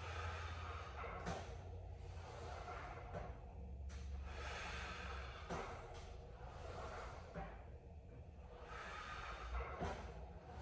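A person breathing hard through a set of reps, each breath in and out a rush of air of about a second or two, with a few faint clicks and a steady low hum underneath.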